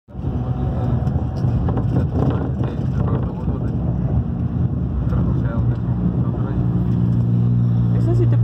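Engine drone and road noise heard from inside a moving vehicle's cabin: a steady low hum that settles into an even pitch toward the end.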